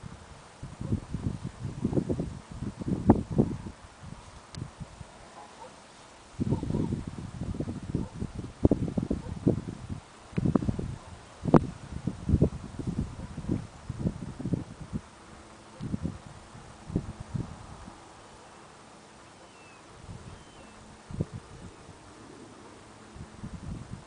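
Wind buffeting the camera's microphone in irregular low rumbling gusts, with a lull about four seconds in and a longer one near the end.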